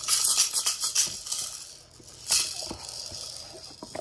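Crinkly wrapping being handled by hand: a dense crackle through the first second and another short burst about two seconds in.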